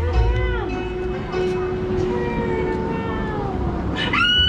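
A performer's high voice in long, gliding wails and held notes, in the theatrical manner of a witch's cry, over a steady low tone.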